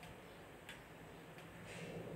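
Quiet room tone with a low steady hum and faint ticks about every 0.7 seconds.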